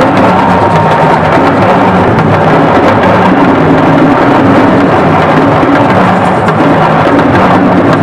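Music with drumming and percussion, playing loudly and steadily throughout.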